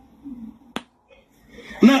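A single sharp click a little under a second in, over faint murmured voice; loud speech starts near the end.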